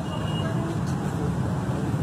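Steady road traffic noise with faint voices in the background.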